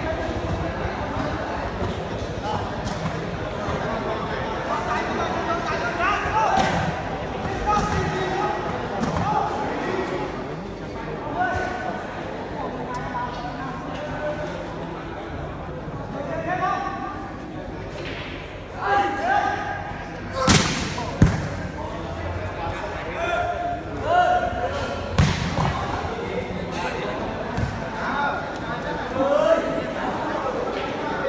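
Volleyball being struck hard by hand twice in quick succession about two-thirds of the way in, with a few lighter hits around it, echoing in a large hall. Spectators' voices call out and shout throughout.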